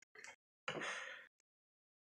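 A man's sharp breaths drawn through the mouth from the burn of very spicy chicken wings: a brief catch of breath, then a longer gasp about two-thirds of a second in that fades away.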